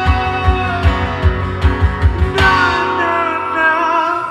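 Live acoustic band music: a cajon beat under strummed acoustic guitar. About two-thirds of the way through, the beat drops out and a sung line with vibrato comes in over the guitar.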